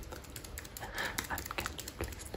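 Typing on a computer keyboard: a quick, irregular run of key clicks, with a soft breathy sound about a second in.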